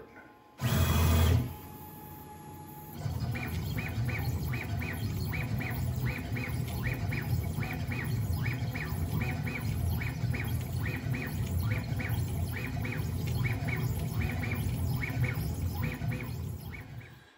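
Onefinity CNC's stepper motors driving the carriage through the quick short moves of a finishing pass at a high max-jerk setting: a steady low hum with rapid, irregular high chirps, about two or three a second, as each move speeds up and stops. A brief loud rush of noise comes about a second in.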